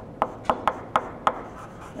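Chalk writing on a blackboard: about five sharp taps and short scrapes of the chalk stick in the first second and a half as letters are written.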